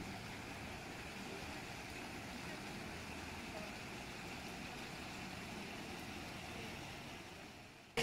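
Faint, steady outdoor background noise with no distinct event in it, fading out near the end.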